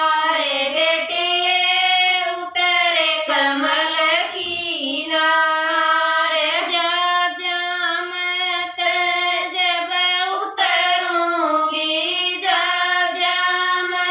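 Women's voices singing a Haryanvi folk song together in long, held notes that glide between pitches, with no instruments heard.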